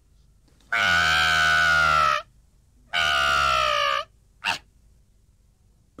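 Cartoon baby doll character howling: two long, loud wails, the second shorter, followed by a brief sound.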